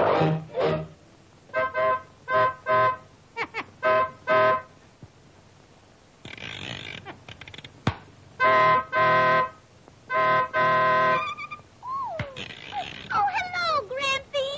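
Cartoon squeeze-bulb horn honking: a run of short honks, then, after a pause, two longer honks. A few gliding, warbling notes follow near the end.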